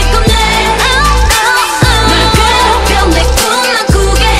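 K-pop song playing: deep bass hits that drop sharply in pitch under a synth beat, with a woman singing over it.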